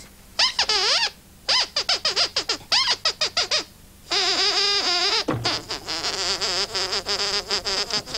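Sweep glove puppet's squeaker voice: a string of high-pitched squeaks that swoop up and down in pitch. It comes in bursts, with a fast warbling run from about halfway through to the end.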